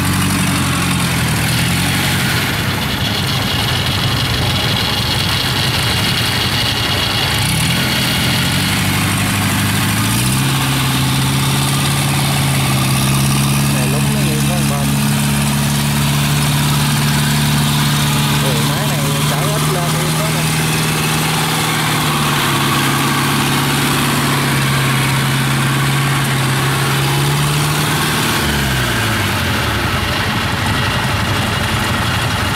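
Engine of a small tracked carrier loaded with rice sacks, running as it crawls through mud. About ten seconds in, the revs rise and hold steady. Near the end they drop back.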